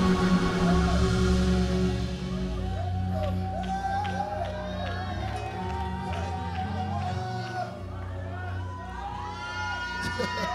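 Live worship music with held low notes, loudest in the first two seconds, under a congregation shouting, whooping and cheering in praise.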